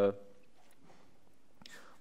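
A man's drawn-out "uh" trailing off, then a pause of faint room tone with a soft breathy sound just before speech resumes.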